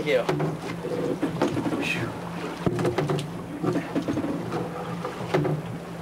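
Scattered knocks and thumps as a large freshly landed fish is handled on a fiberglass boat deck, over the steady hum of the boat's engine, with voices in the background.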